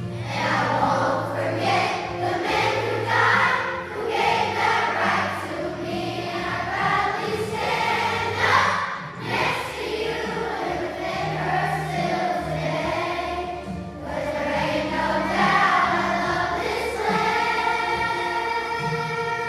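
A children's choir singing with instrumental accompaniment, the voices carried over steady low bass notes.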